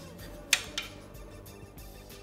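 Soft background music with a sharp click about half a second in and a fainter one shortly after, from a circuit board being handled and turned over.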